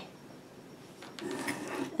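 Ceramic tile being turned on a cutting mat: a soft rubbing scrape starting about a second in, with a few faint clicks.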